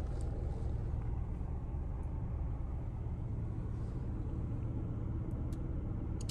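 Toyota GR Yaris 1.6-litre turbocharged three-cylinder engine idling steadily, heard from inside the cabin as a low, even hum.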